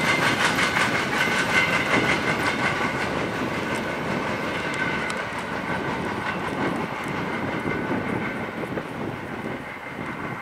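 Empty steel coal hopper cars of a freight train rolling past, their wheels clicking rhythmically over the rails, the sound slowly fading as the train moves away.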